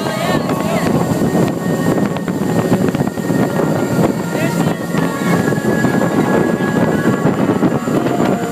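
Loud, steady wind buffeting the microphone on the open deck of a speedboat at high speed, over the boat's engine and rushing water.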